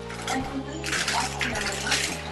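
Thin plastic shopping bag rustling and crinkling in short bursts as hands dig through it and lift out plastic takeaway containers, about a second in, again half a second later and near the end.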